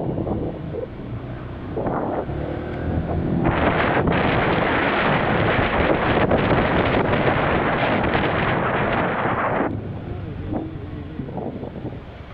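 Wind rushing over the microphone of a moving rider's camera: loud and steady from about three and a half seconds in, dropping away about two seconds before the end. Street traffic and an engine hum underneath before and after the gust.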